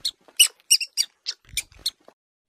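Rabbit sound effect: a run of about eight short, high-pitched squeaks.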